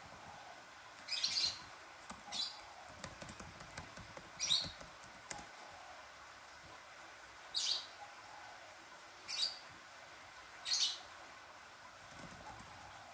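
A bird chirping: single short, high chirps every one to three seconds, six in all, over a faint steady background hiss.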